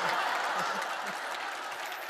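Studio audience applauding, strongest at first and slowly dying down.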